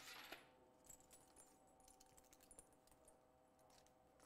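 Near silence, with faint scattered clicks and small rattles of a shoulder strap's metal clips being unhooked and handled.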